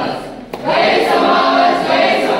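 A group of young men and women singing a song together in unison, breaking off briefly about half a second in and then starting the next line.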